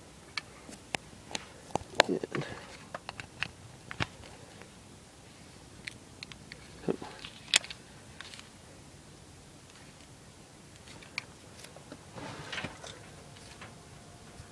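Scattered light clicks and taps of a small USB fan and its cable being handled and plugged in. Near the end a faint steady hum starts as the fan runs.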